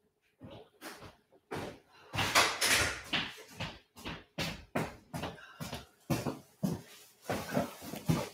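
A run of irregular knocks and thumps in a room, about two or three a second, loudest about two to three seconds in.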